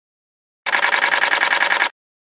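A short buzzing electronic sound effect lasting just over a second, with a fast flutter, set between stretches of dead silence: the stinger for an animated logo bumper.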